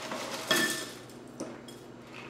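Dry puffed-wheat cereal poured from its box into a ceramic bowl: a sudden rattling rush with a light clink against the bowl about half a second in, tailing off into a few stray pieces clicking down near the end.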